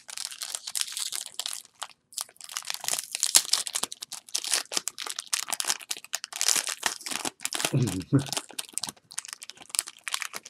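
Foil trading-card pack wrapper crinkling and tearing in quick, irregular rustles as it is opened and the cards are slid out.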